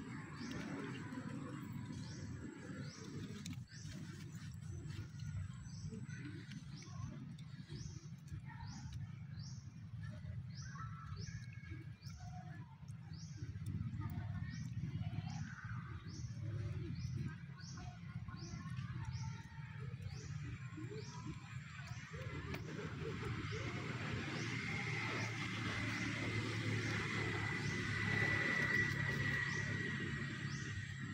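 Outdoor woodland ambience: a regular series of short, high chirps, about two a second, over a steady low rumble. A thin, high, steady tone rises in the last several seconds.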